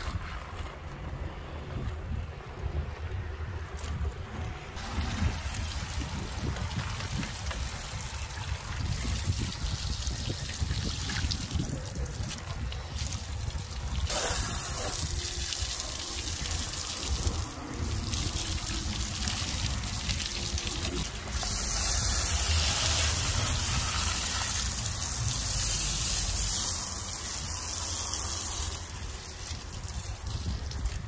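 Water from a garden hose, first running near a plastic bucket, then sprayed against the mud-caked tyre, wheel well and fender of a Jeep Wrangler JKU. It is a continuous rushing hiss, loudest during the last third.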